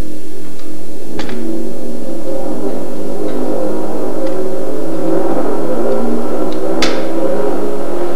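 Drum kit being played continuously and loudly, a dense sustained drum passage with two sharp accent hits, one about a second in and one near the end.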